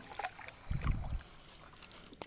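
A wooden canoe being paddled: soft paddle and hull sounds with small clicks, and a brief low rumble about a second in.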